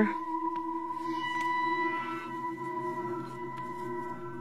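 Background ambient music: a steady, eerie drone of held tones.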